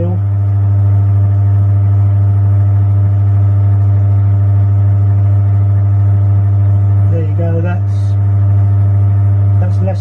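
Milling machine spindle running, turning a hole centre finder in the bore of a rotary table: a loud, steady, even hum with a low fundamental and a ladder of overtones.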